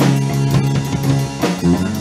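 Instrumental passage of a post-hardcore rock song: electric guitar and bass holding sustained notes over a drum kit, with no vocals.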